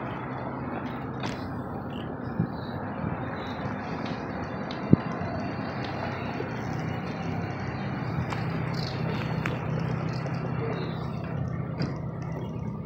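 Road traffic noise from a line of cars and a city bus: a steady hum of engines that grows a little stronger from about halfway, with one sharp click about five seconds in.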